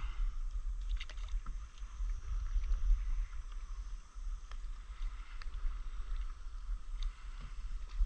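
Water sounds of a stand-up paddleboard being paddled over calm sea: a steady hiss of water with a few light splashes and drips, over a constant low rumble.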